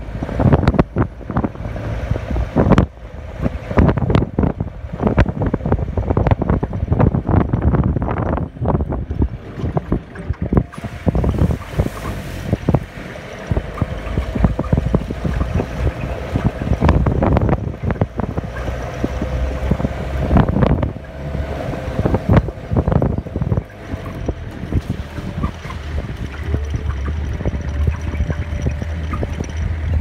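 A 1990 Land Rover Defender drives over a rough gravel track. The engine and drivetrain give a steady low rumble under frequent knocks and rattles as the vehicle jolts over the stones and ruts, with a faint steady whine from about ten seconds in.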